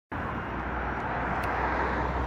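Steady road traffic noise from a busy seafront road.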